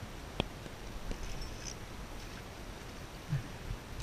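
Steady wind and sea noise on an open boat, with a single sharp click about half a second in.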